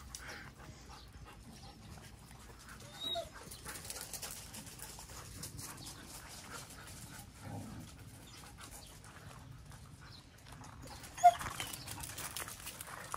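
Several dogs moving about in a quiet yard, with faint dog sounds. One short, sharp sound near the end is the loudest moment.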